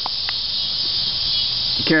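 Insects chirring in a steady, high chorus, with a faint single click about a third of a second in.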